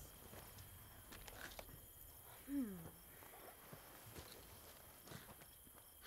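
Faint footsteps and rustling on grass as several people get up off a blanket and walk, with a few soft scuffs. A short falling "hmm" from one voice about halfway through.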